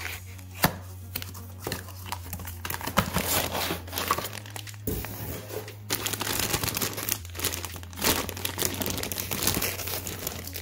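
Plastic bag crinkling and rustling as a clutch disc is unwrapped from its packaging, with a few sharp snaps of plastic and cardboard.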